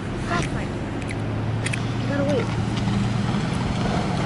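Road traffic on a wet street: a passing vehicle's low, steady engine hum over tyre noise.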